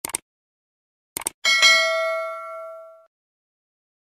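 Subscribe-button animation sound effect: two quick mouse clicks, two more about a second later, then a notification-bell ding that rings out and fades by about three seconds in.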